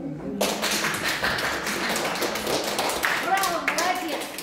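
Audience applauding, starting suddenly about half a second in, with a voice or two heard over the clapping near the end.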